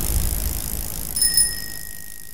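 Music fading out, then a single bright bell-like ding a little over a second in, its tone ringing on.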